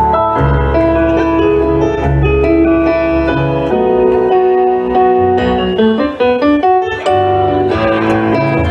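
Yamaha CP stage piano played solo through PA speakers: held chords over a moving bass line, with a quick run of short notes about six to seven seconds in.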